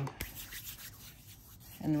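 Hands rubbing together with a soft, faint scuffing, working in a homemade peppermint-oil and rubbing-alcohol hand sanitizer, after a short click just after the start.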